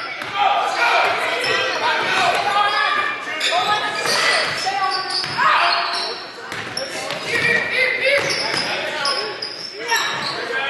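A basketball being dribbled on a hardwood gym floor amid shouting and chatter from players and spectators, echoing in a large gym.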